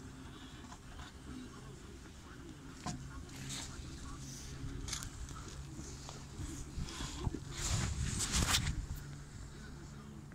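Scattered knocks and scraping from a wooden plank being worked into place on top of a tire wall, with a louder run of scraping and rustling about eight seconds in, over a low steady hum.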